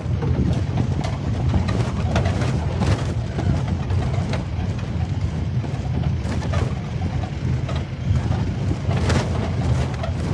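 Safari jeep engine running as the open-sided vehicle drives along a rough dirt forest track, a steady low rumble with occasional sharp knocks and rattles from the body over bumps.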